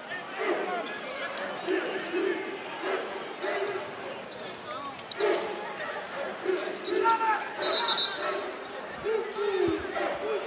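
A basketball dribbling on a hardwood court with repeated dull bounces, over the murmur of a crowd in a gym. A brief high tone sounds about eight seconds in.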